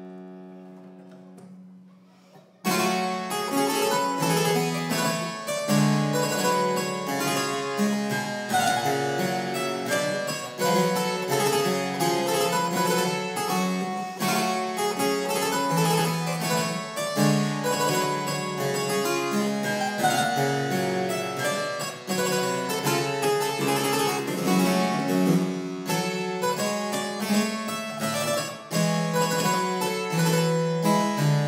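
Italian one-manual harpsichord (built by Lorenzo Bizzi): a held chord dies away, and after a brief pause, about three seconds in, a new piece begins in a lively stream of plucked notes that runs on.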